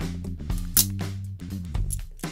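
Background music with a steady bass line and beat. A little under a second in comes a single sharp metallic snap: the release lever of a pair of curved-jaw Vise-Grip locking pliers springing the locked jaws open.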